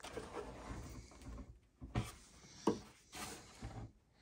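Handling noise from the lightweight printed airplane and the camera: soft rustling over the first second or so, then two light knocks about two and three seconds in.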